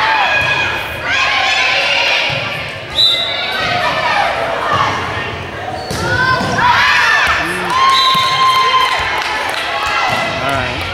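Volleyball rally in a gym with a reverberant hall sound: players and spectators shouting and cheering throughout, with sharp smacks of the ball being hit about three seconds in and about six seconds in.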